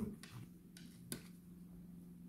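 Soft handling of a lint-free pad wet with degreaser being wiped over a gel-topped nail: faint, with two light clicks about a second apart over a low steady hum.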